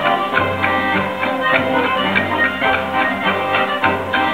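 Live traditional folk ensemble music, with accordion and plucked stringed instruments playing sustained chords and a regular beat of about three notes a second.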